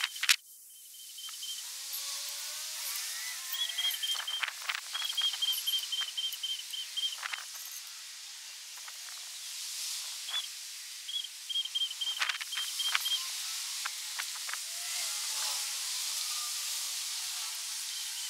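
Outdoor ambience: a steady hiss with scattered clicks and several runs of a rapid, high-pitched repeated note, in the middle and again about two-thirds of the way through.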